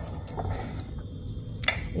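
Quiet handling of a ceramic mug as it is turned around and picked up, with a couple of light clicks from the mug and its stirrer, the sharpest one near the end.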